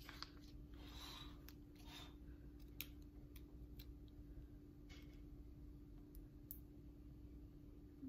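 Faint paper rustling and a few light ticks of a sticker being peeled from its backing sheet and pressed onto a planner page, over a steady low hum.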